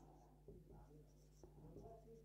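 Faint squeaks and scratches of a felt-tip marker writing on a whiteboard: a few short strokes.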